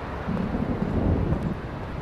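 A low rumble of thunder that swells about a third of a second in and dies away after about a second and a half.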